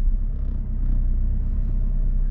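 A car's engine and tyre rumble heard from inside the cabin as it rolls slowly across a grassy yard: a steady low drone with an even engine hum.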